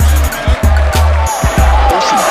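Hip hop backing track: deep bass notes in a steady beat under ticking cymbals, with a high wavering line sliding up and down over it about halfway through.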